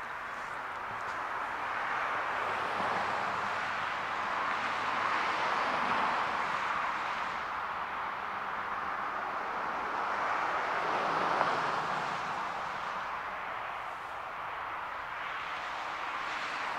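Road traffic passing close by: a rushing hiss of tyres that swells and fades as cars go past, loudest about six seconds in and again around eleven seconds.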